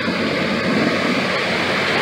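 A pickup truck driving through deep standing floodwater, its tyres throwing up a steady rush of spray.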